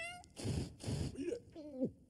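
Cartoon cat's wordless cries: a short rising yelp at the start, two short noisy bursts, then a cry that bends downward in pitch near the end.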